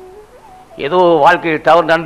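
A man's voice speaking Tamil into a microphone. It opens on a long held hum that slides upward in pitch, then breaks into rapid, expressive speech about a second in.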